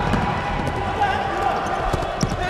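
Indoor handball game: the ball bouncing on the court floor in a few short knocks, over a steady murmur of crowd and player voices in the hall.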